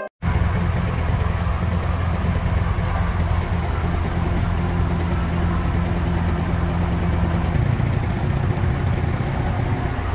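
Heavy diesel engines of an asphalt paver and a lowboy truck running steadily at low revs. The sound cuts in suddenly at the start, and a higher hiss joins it about three-quarters of the way through.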